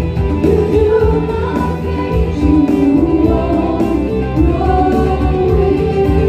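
Live worship band music: voices singing over programmed keyboard parts, with a steady beat.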